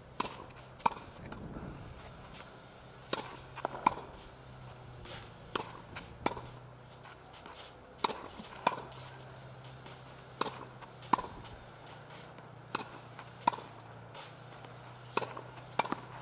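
Tennis rally on a clay court: sharp pops of the ball being struck by racket strings and bouncing on the clay, mostly in pairs about half a second apart, recurring every two to three seconds.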